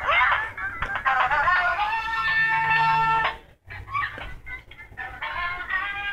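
Electronic tune with a synthesized singing voice from a Master Splinter toy. It cuts out suddenly about three and a half seconds in, then starts again.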